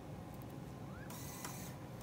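Motorized objective turret of a Zeiss confocal microscope turning to the 10x objective. It starts with a faint rising whine about a second in, followed by about half a second of high, hissing mechanical whir.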